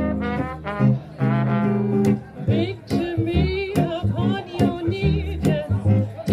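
Vintage-style acoustic quartet playing swing jazz live: a woman singing with vibrato over upright double bass and acoustic guitar.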